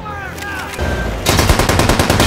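Rapid machine-gun fire from a mounted machine gun, a fast unbroken string of shots that starts about a second in.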